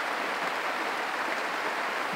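Steady rain heard from inside a shack: an even, unbroken hiss.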